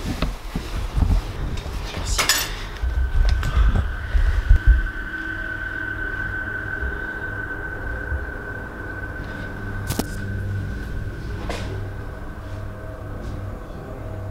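Bumps and knocks of a person climbing in through a window over a radiator and dropping into a room, with a sharp knock about two seconds in. From about three seconds a steady high tone sets in and holds, over a low hum.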